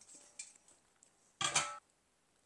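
Stainless steel pot set down on a stone kitchen countertop: one short clunk with a brief metallic ring about one and a half seconds in, after a faint tick near the start.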